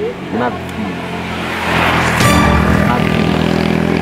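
A motor vehicle passing close by on the road: its engine and tyre noise swell from about a second in and peak just after two seconds, with a steady engine drone for about a second after the peak.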